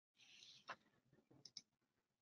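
Near silence: faint room tone with two soft clicks, one a little before a second in and one about a second and a half in.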